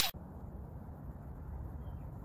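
Faint steady outdoor background noise: a low rumble, as of wind or distant traffic on a phone microphone, with no distinct events.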